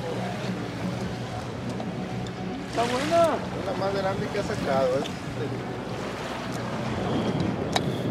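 A boat's engine running with a steady low hum under wind and water noise; a voice calls out briefly about three seconds in and again between four and five seconds.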